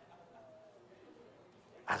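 Near-silent pause with faint room tone, then a man bursts into a laugh right at the end.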